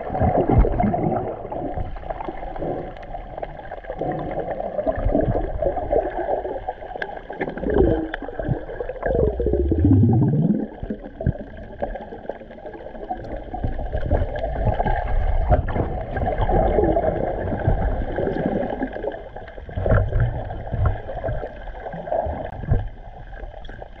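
Muffled underwater sound picked up by a camera below the surface: water gurgling and rushing as snorkelers kick and release bubbles. About nine seconds in, a tone falls steadily in pitch.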